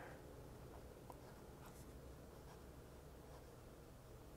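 Near silence, with the faint sound of a Lamy Studio fountain pen's medium nib moving over paper as it writes cursive words.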